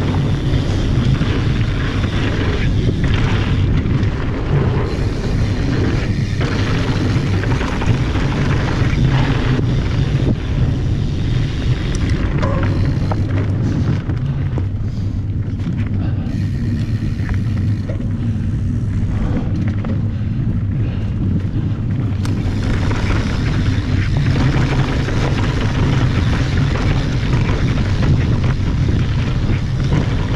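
Wind rushing over an action camera's microphone and mountain bike tyres rolling over a dry dirt trail during a fast descent, a steady heavy rumble with rattle and crunch from the bike. The rumble stays loud throughout, with less hiss for a few seconds in the middle.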